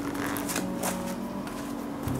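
A short burst of rustling with sharp little clicks early on, over soft plucked background music that keeps playing.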